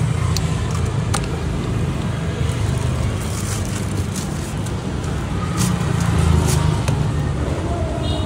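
Steady low rumble of road traffic. A thin plastic carry bag crinkles as it is pulled open and slipped around a lidded plastic cup of iced tea, giving short crackles through the middle of the stretch.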